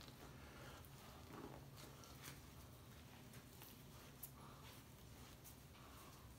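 Near silence: a few faint soft clicks and rustles of a red fox hide being worked loose by hand, over a steady low hum.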